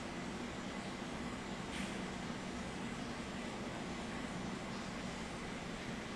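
Steady low hiss and hum of room tone, with one faint short tick about two seconds in.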